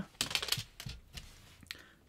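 Light plastic clicks and rattles as the small plastic button sections and casing of a Yamaha Tenori-On are handled and pressed into place. A quick flurry of clicks comes about a quarter second in, then a few single clicks.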